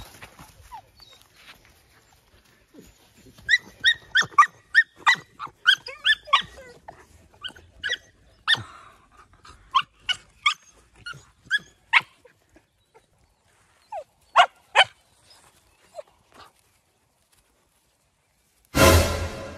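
Dogs barking and yipping in short, high-pitched bursts while wrestling. The calls come thick and fast for several seconds, then a few more follow before they stop.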